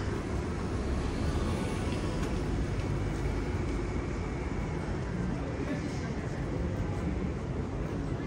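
Street ambience dominated by a steady low rumble of slow-moving cars driving past on a narrow paved street, with faint voices of passers-by.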